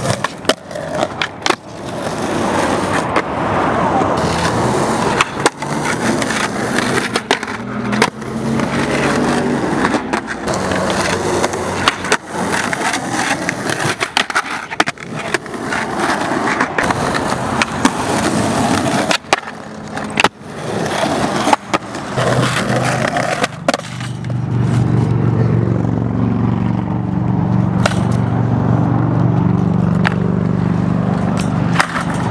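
Skateboards rolling on rough concrete, broken by repeated sharp clacks and knocks of boards popping, hitting the ledge and landing. Near the end the rolling becomes a steadier, lower rumble.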